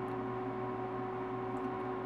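Steady electrical hum with a few fixed tones, with a couple of faint ticks.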